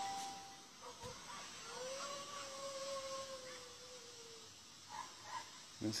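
A faint, drawn-out wailing cry: one long note that rises as it begins about two seconds in, holds, and fades out past four seconds, followed by a few short faint cries near the end. It is the sound presented as the alleged wail of La Llorona.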